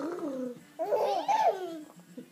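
Three-month-old baby cooing: two drawn-out vowel sounds that rise and fall in pitch, the second, around the middle, louder.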